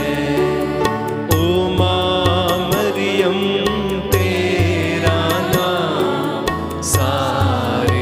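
A group of women singing a devotional hymn together at the microphones, with a steady percussion beat and bass underneath.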